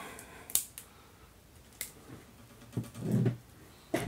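Handling noise from a folding knife and rifle parts on a workbench: a few sharp clicks in the first two seconds, then a softer, duller knock about three seconds in.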